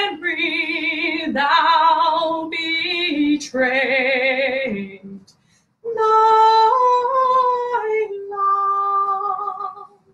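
A woman singing a song unaccompanied, her voice holding long notes with vibrato. She breaks off briefly about five seconds in, then sings on through long sustained notes near the end.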